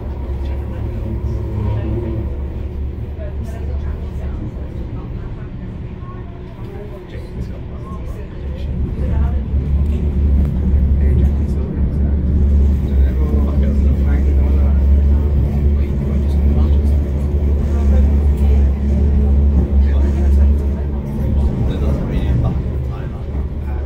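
Manchester Metrolink M5000 tram heard from inside the driver's cab while running along the line: a steady low hum from the motors and wheels on rail, growing louder about nine seconds in.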